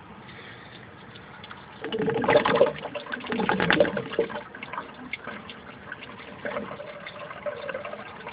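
Aquaponics bell siphon (2-inch PVC bell over a 3/4-inch standpipe) gurgling and sucking air as the grow bed drains down and the siphon breaks. The gurgling is loudest and most irregular about two to four seconds in, then goes on in weaker spurts.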